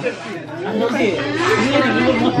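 Several people talking over one another around a dinner table: lively chatter with no single voice leading.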